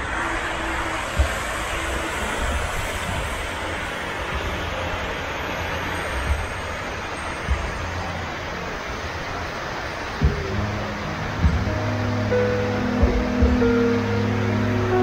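Steady rushing of water falling down the walls of the 9/11 Memorial reflecting pool, heard as an even hiss with a few soft thumps. Soft held music tones come in about ten seconds in.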